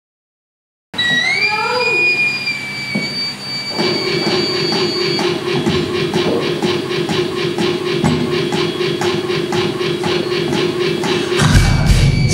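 Analog synthesizer intro, a Korg MS-20, starting after about a second of silence: tones glide up and hold, with short warbling blips, then a steady low drone sets in under a quick, even ticking pulse. Near the end the full band comes in with loud drums.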